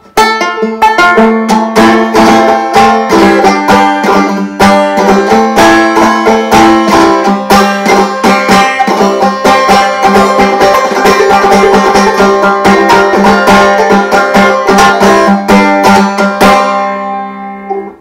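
Tenor banjo tuned like a ukulele (G-C-E-A), its A string a 30 lb monofilament fishing line, played as a quick tune of rapid plucked notes. It closes on a held chord that rings out and fades near the end.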